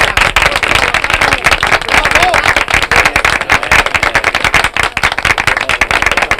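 Applause from a roomful of people, many hands clapping steadily.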